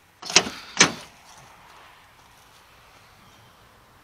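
Pickup truck door being unlatched and opened by its outside handle: two sharp metallic clicks about half a second apart, then quiet background.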